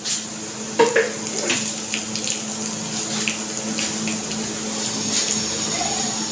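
Cumin seeds, chopped garlic and green chillies sizzling in hot ghee in a kadai, a steady hiss with many small crackles as the seeds splutter.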